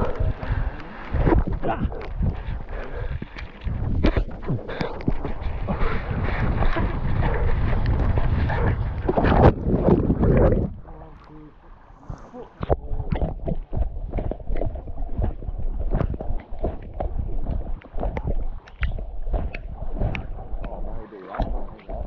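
Foam bodyboard sliding fast down a sand dune, with sand hissing under the board and wind buffeting the microphone. After a short lull about eleven seconds in, water sloshes and splashes around the camera at the lake surface.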